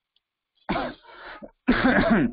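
After a short silence, a man coughs once, a rough burst with a trailing rasp. Near the end he starts speaking.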